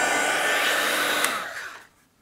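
Handheld heat embossing tool blowing hot air steadily, with a faint steady whine from its fan, melting gold embossing powder on a stamped card; it dies away near the end.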